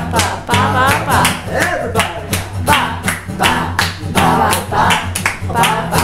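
Acoustic guitar strummed with a man singing, and hand claps keeping a steady beat.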